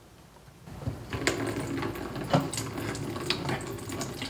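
A stainless steel pot's lid rattling and clinking against the rim as the pot is tilted, with watery tomato juice starting to pour into a plastic pitcher about a second in.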